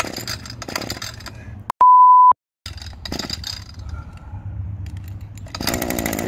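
A censor bleep, one loud steady beep about two seconds in, lasting half a second and then cut to dead silence. Around it come clicks and rattles from pulls on the recoil starter cord of a Shindaiwa M262 two-stroke multi-tool.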